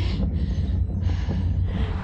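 Heavy wind rumble on the camera microphone while cycling at speed, with a few breathy gasps of laughter from the rider.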